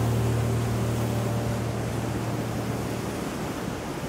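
Ocean surf: waves breaking and washing up a beach, a steady rushing noise, while the last held low notes of a music track fade out over the first two seconds or so.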